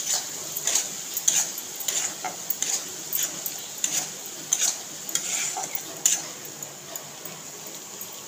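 Metal spatula scraping and knocking against a kadhai while stirring a mustard-paste masala frying in oil, over a steady sizzle. The strokes come about twice a second and thin out after about six seconds.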